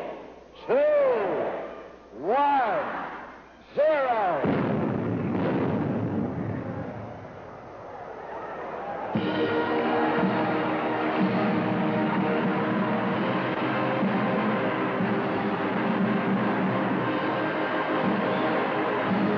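The last drawn-out shouts of a countdown, then about four seconds in a human cannon fires with a loud blast that dies away over a few seconds. About nine seconds in a circus band strikes up and keeps playing.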